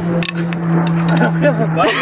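A steady low hum runs throughout, with a few sharp clicks in the first second. A person's voice rises near the end.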